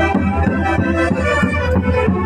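Loud festive Andean band music with a steady beat and several melody instruments playing together.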